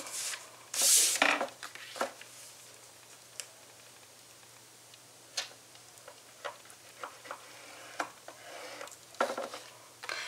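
Cardstock being handled on a plastic scoring board for scoring a crease: a short scrape of paper sliding about a second in, then scattered light clicks and taps as the card is lined up and folded.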